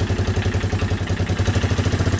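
Honda Big Red ATC 200's single-cylinder four-stroke engine idling with an even, rapid beat while running on vegetable oil in place of motor oil.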